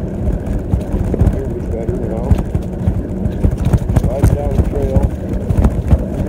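Wind buffeting a phone's microphone while cycling: a steady, gusty low rumble. A man's voice comes through muffled at times in the second half.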